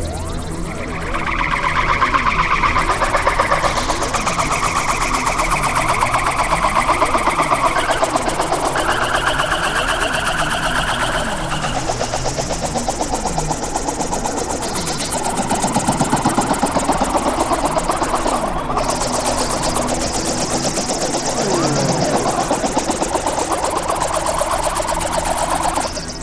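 Experimental electronic noise music from synthesizers: dense layered tones with a fast pulsing flutter, low pitch glides sweeping up and down underneath, and bands of tone that jump to new registers every few seconds.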